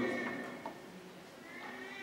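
A pause in a man's speech: his voice trails off in the first half second, leaving a faint, steady high tone until speech resumes.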